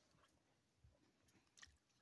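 Near silence, with a couple of faint ticks.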